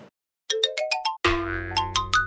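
Short cartoonish musical sting: starting about half a second in, a quick run of plucked notes climbs in pitch, then a second climbing run plays over a low held note.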